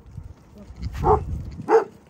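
Dog coughing twice, two short harsh coughs a little over half a second apart, about a second in and near the end.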